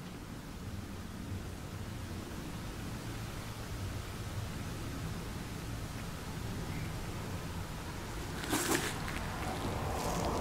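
Quiet steady low background hum and hiss, with a brief rustle about eight and a half seconds in as a gloved hand turns a plastic bottle.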